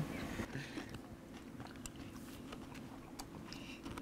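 Faint chewing: scattered soft mouth clicks and smacks as a mouthful of ceviche is eaten, over a low steady background hum.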